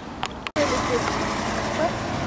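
Road traffic on a city street: cars and a truck driving past. The steady traffic noise starts abruptly about half a second in.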